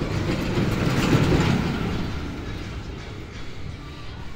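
Steel roller coaster (Pacific Park's West Coaster) train rumbling along its track, swelling to a peak about a second in and then fading away.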